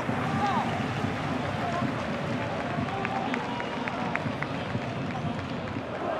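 Pitch-side ambience of a professional football match with no crowd: a steady hiss with faint shouts from players and a few light ticks around the middle.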